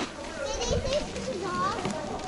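Background chatter of several visitors talking, including high-pitched children's voices, with scattered short clicks.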